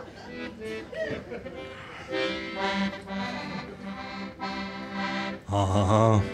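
Accordion playing sustained chords in a steady pulse, the introduction to a rock-and-roll song, coming in about two seconds in. A louder low chord sounds near the end.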